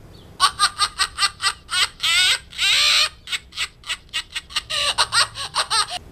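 Recorded laughter sound effect played back through the small speaker of a Telemarketer Repellant Sound Machine toy: a run of quick, pulsing laughs starting about half a second in and lasting about five seconds.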